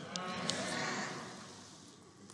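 A faint, drawn-out voice answering from the congregation, then a soft room hush that fades away.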